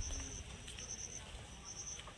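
Insect chirping in short, high-pitched trills repeated roughly once a second, over a faint low rumble.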